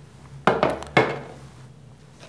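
A molded ABS plastic project box being set down on top of an electric motor: two hard knocks about half a second apart.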